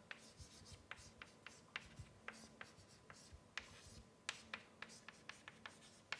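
Chalk writing on a blackboard: a quick, irregular run of faint taps and short scratches as each stroke of the formula is made.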